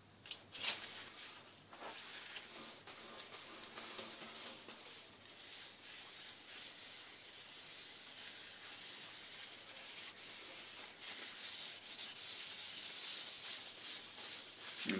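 A paper towel rubbing oil finish onto olive wood spinning on a lathe: a faint, steady hiss, with a few sharp handling clicks in the first two seconds.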